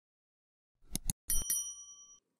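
Two quick click sound effects about a second in, followed by a bright bell ding that rings on for most of a second. This is the stock sound of a subscribe-button animation with its notification bell.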